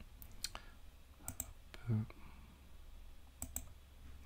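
Faint sharp clicks of a computer mouse, several of them, mostly in quick pairs, as an on-screen button is clicked.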